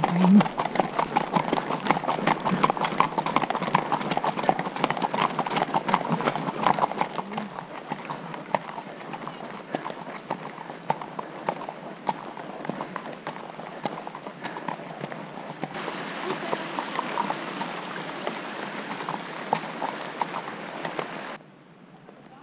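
Haflinger horses walking in a group, their hooves clip-clopping in a dense, irregular patter on a forest track, heard from the saddle. The hoofbeats grow quieter after about eight seconds and cut off shortly before the end.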